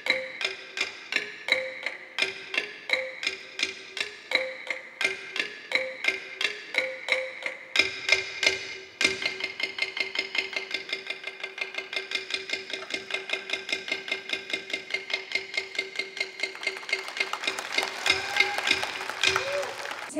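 Philippine folk ensemble playing struck bamboo and hand percussion in a repeating pattern of ringing notes, which turns to rapid, even strokes about halfway through.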